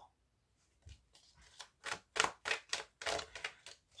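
A deck of divination cards being shuffled by hand: a quick run of light card slaps, about five a second, starting about a second in.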